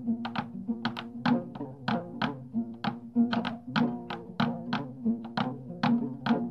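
Instrumental music: a fast repeating pattern of short, sharp pitched notes, about three a second, over steady sustained low notes.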